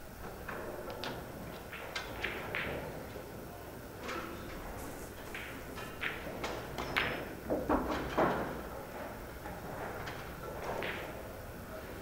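Pool balls clicking against each other and a cue tip striking the cue ball, heard as scattered sharp clicks that come thickest in the second half. Faint voices carry in the background of a large hall.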